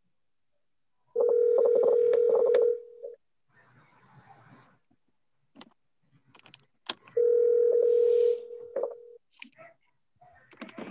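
Telephone ringback tone: two long steady rings, each about two seconds, about four seconds apart, as an outgoing call rings unanswered. Faint clicks and rustle are heard between the rings.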